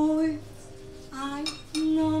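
A woman singing with a small live band: a long held note, a short quieter gap, a brief phrase, then another held note, over a steady low accompaniment line.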